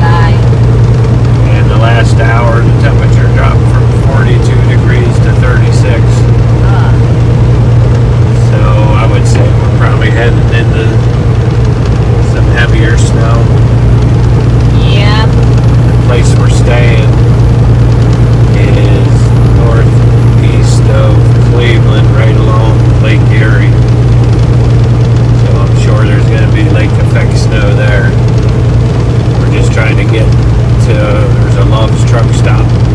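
Semi-truck's diesel engine droning steadily in the cab at highway cruising speed, a loud unbroken low hum, with faint indistinct voices over it.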